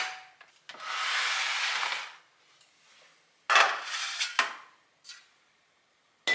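Electric pressure rice cooker lid pushed shut with a click, followed by about a second of steady rubbing noise. A cluster of knocks and clatter comes about halfway through, and one small knock near the end.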